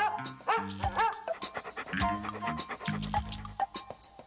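A dog barking three quick times in the first second, over backing music with a steady beat.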